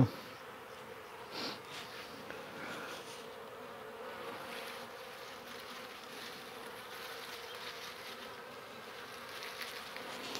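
Honeybees buzzing in a faint, steady hum, swelling briefly about a second and a half in.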